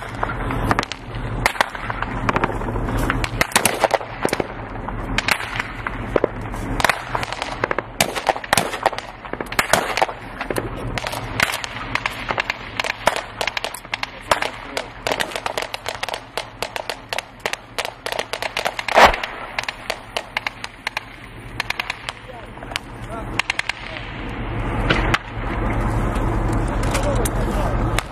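Gunfire in a firefight: dozens of sharp shots at irregular intervals, sometimes in quick runs, with one much louder shot about two-thirds of the way through.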